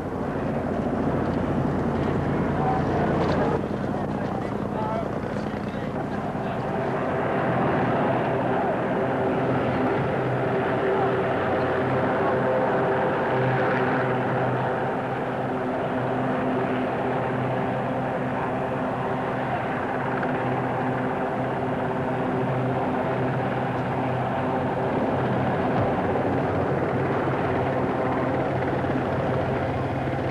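Helicopter running close by: a continuous, even engine-and-rotor drone at a steady pitch, with people's voices faintly under it.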